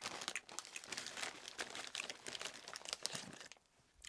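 Foil-lined chip bag crinkling and rustling in a faint, irregular run of small crackles as a chip is fished out of it with foil-capped fingers; it stops about half a second before the end.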